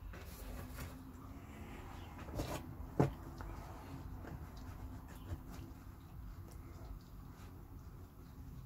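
Handling noise from a closed folding knife being slid clip-first into a denim jeans pocket: faint rubbing of cloth with a few light knocks and clicks, the loudest about three seconds in.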